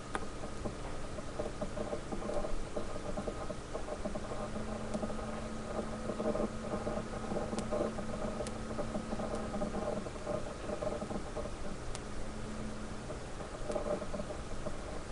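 Sliced onions frying in hot oil in a pan, sizzling steadily over a constant hum, with a few light clicks as they are stirred.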